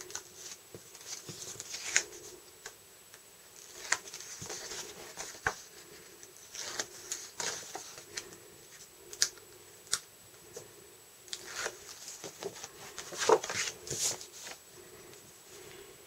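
Backing liner being peeled off quarter-inch double-sided tape on cardstock, with intermittent paper rustling and crinkling and a few sharp small clicks.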